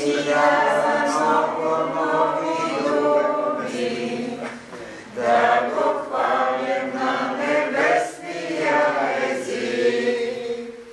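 A group of voices singing a hymn together without instruments, holding long notes in slow phrases with brief breaks between them.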